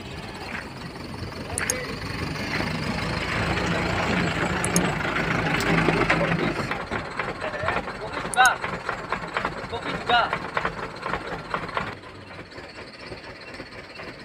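A motor vehicle engine running close by, growing steadily louder for the first half and then dropping away, followed by scattered clicks and faint background voices.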